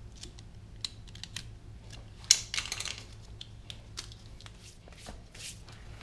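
Utility knife cutting into the plastic housing of a trailer-wiring plug: a run of small clicks and scrapes, with a louder rasping cut about two and a half seconds in.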